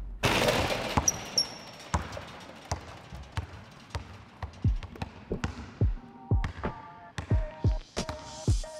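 Basketball dribbled on a hard gym floor: a string of deep thuds that come faster toward the end. A pitched musical line joins the bounces in the last couple of seconds.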